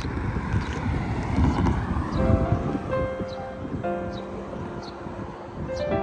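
Wind rumbling on the microphone, then soft background music with held, piano-like notes coming in about two seconds in.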